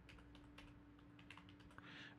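Faint typing on a computer keyboard: a quick, uneven run of soft key clicks, with a faint steady hum underneath.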